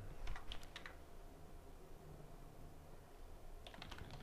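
Computer keyboard typing: a few keystrokes about half a second in, then a quick run of keystrokes near the end.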